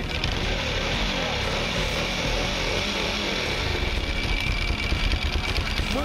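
Cagiva 900 i.e.'s Ducati Desmodue V-twin running and being revved, a little louder in the second half, now firing on both cylinders after a spark plug change cured a misfire.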